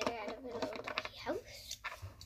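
A few sharp plastic clicks and taps as small Lego pieces are handled and set down on a tabletop, with a girl's soft, wordless voice over the first half that glides upward in pitch just past the middle.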